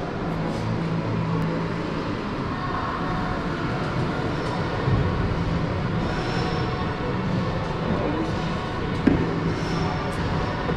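Steady background noise of a busy gym with a low rumble. About nine seconds in comes a single short knock, as the weight plates hanging from the dip belt are set down on the step.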